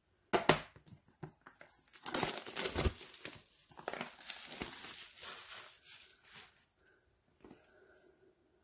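Clear plastic shrink wrap being slit and torn off a boxed CD album and crinkled in the hands. A sudden rip just after the start, then a longer stretch of crinkling and tearing that fades out near the end.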